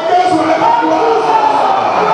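A congregation of many voices singing together, holding notes and moving between them in a steady melody.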